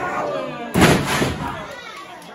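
A wrestler's body slammed onto the ring mat: one loud, sharp bang of the canvas and boards a little under a second in, ringing briefly. Crowd voices go on around it.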